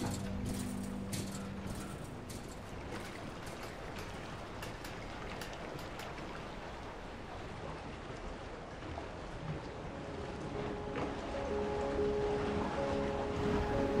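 A steady wash of water with scattered light clicks in the first half. Soft music with held notes fades in over the last few seconds.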